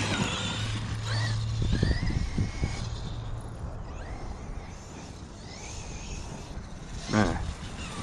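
Electric RC car's brushless motor whining, rising in pitch a few times as the truck throttles up in the first three seconds, then fading.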